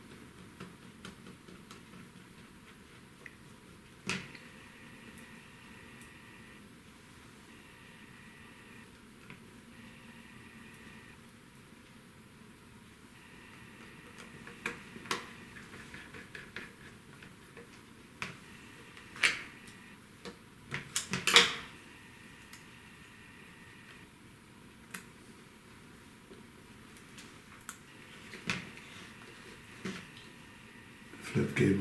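Scattered small clicks and taps of a screwdriver and fingers on the plastic housing and circuit board of an opened portable Digital Compact Cassette player. The clicks are sparse at first, with the loudest cluster of knocks about two-thirds of the way through.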